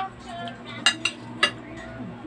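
Metal spoon clinking against a ceramic plate while scooping rice: three quick clinks about a second in.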